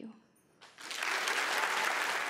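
Audience applause breaking out under a second in and quickly swelling to a steady level.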